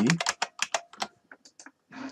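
Typing on a computer keyboard: a quick run of keystrokes through the first second, then a few scattered key clicks.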